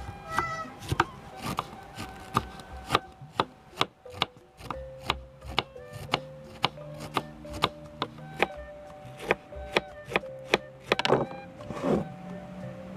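Kitchen knife shredding a head of cabbage on a wooden cutting board: a run of crisp slicing strokes, about two to three a second, each ending in a tap on the board. Near the end there is a brief, denser scraping as the shreds are worked across the board.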